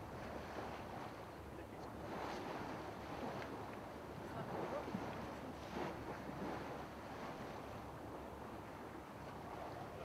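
Faint, steady background of a boat under way: a low engine hum with water and wind noise.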